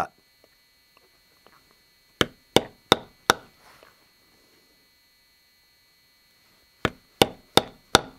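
A mallet striking a basketweave stamping tool into leather on a stone slab: two runs of four sharp knocks, a few seconds apart, each run evenly spaced.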